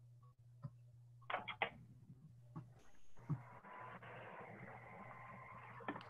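Faint background noise on a video call: a few soft clicks and a brief faint sound about a second and a half in, then a low steady hiss from an open microphone through the second half.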